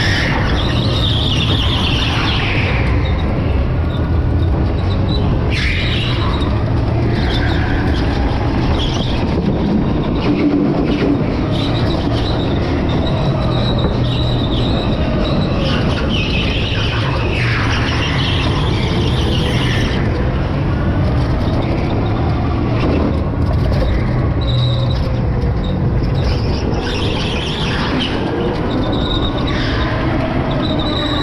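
Electric go-kart at speed, its motor whine rising and falling with the throttle over a steady low rumble. Tyres squeal in bursts through the corners, four or so times.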